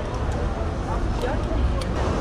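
City street traffic noise with a steady low rumble, heard from a bicycle pulling out into the road, with faint indistinct voices.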